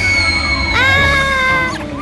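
A cartoon baby character's long, high-pitched scream while falling, held in two long notes, the second starting about three quarters of a second in, over a low rumble.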